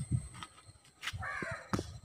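A single bird call of about half a second, starting about a second in, over faint low thumps.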